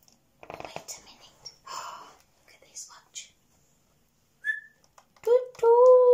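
After some soft whispering, a person gives a long whistled owl-like hoot about five seconds in, rising briefly and then held steady.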